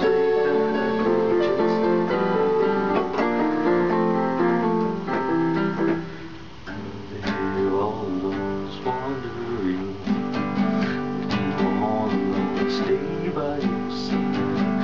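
Digital keyboard playing held chords for the first six seconds or so, a brief dip, then a nylon-string classical guitar takes over, played with quick plucked notes and chords.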